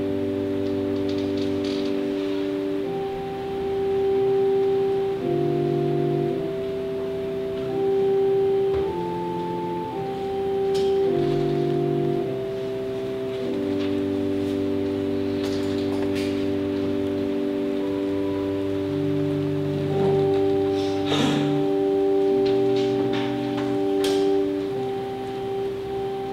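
Organ playing slow, sustained chords, each held a second or two before moving to the next, in the manner of a hymn or postlude.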